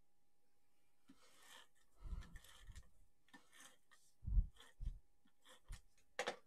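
Paper and cardstock handled on a tabletop: soft scraping and rustling with a few dull thumps, the first about two seconds in and two more between four and five seconds in.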